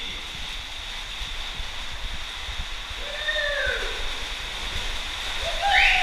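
Rushing water of a shallow stream flowing and splashing around an inner tube. A person's voice calls out briefly about three seconds in, and louder near the end.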